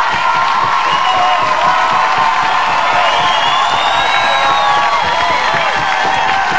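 Audience cheering and whooping with clapping at the end of a live song, many voices overlapping in a steady din.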